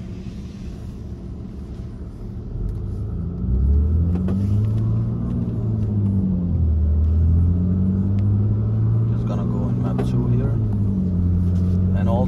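BMW S55 twin-turbo straight-six engine heard from inside the cabin, running low and rumbling at first. About three and a half seconds in it grows louder, and the revs rise and fall twice before settling near the end.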